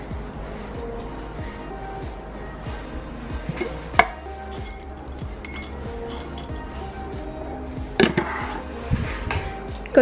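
Background music, with a few sharp clinks of a glass jar of dog cookies being opened and rummaged for a treat. The loudest clinks come about four and eight seconds in.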